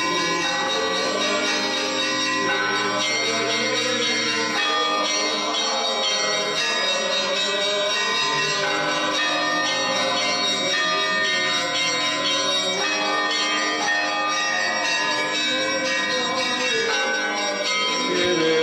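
Church bells ringing steadily, many strokes overlapping and sustaining.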